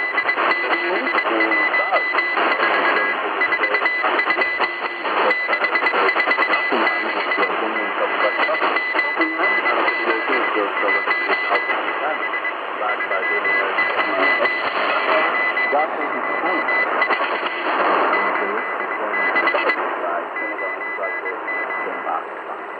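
Shortwave radio reception near 6 MHz: a Morse code tone at about 2 kHz keys on and off, buried in a crowded, noisy band with garbled voice-like sound and static. The keying decodes only as meaningless strings of letters.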